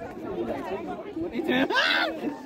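Chatter: several people's voices talking over one another, with one louder, higher-pitched voice near the end.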